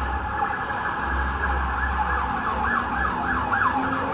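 Emergency-vehicle siren in a rapid up-and-down yelp, sweeping about three times a second from about a second and a half in, over a low rumble.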